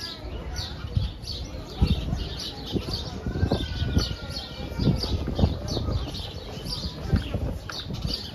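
Small birds chirping, short high chirps repeating about twice a second, with a longer whistled note in the middle. Irregular low thumps and faint voices of passersby sit underneath.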